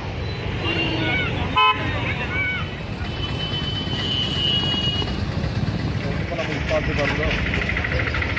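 A vehicle horn gives one short toot about one and a half seconds in, the loudest thing here, over a steady rush of floodwater running across the road. Voices call out around it, and speech comes in near the end.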